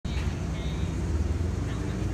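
City street ambience: a steady low rumble of traffic, with faint voices of passing pedestrians.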